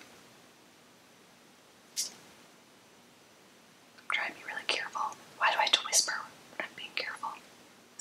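A woman whispering under her breath through the second half, after a near-quiet first half with a single small click about two seconds in.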